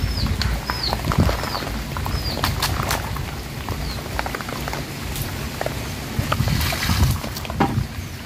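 Freshly caught small fish wriggling and slapping on a wet plastic tarp, making scattered wet patters and clicks. A short high squeaky chirp repeats about once a second.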